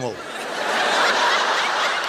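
Studio audience laughing together in reaction to a joke, swelling to a peak about a second in and then easing off.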